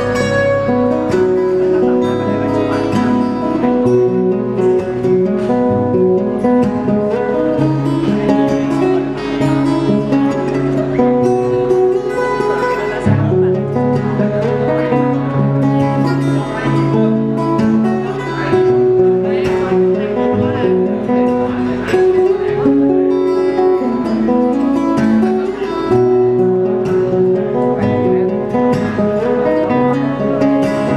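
Two steel-string acoustic guitars played together as a duet, with plucked melody notes over a moving bass line, continuous and steady in loudness.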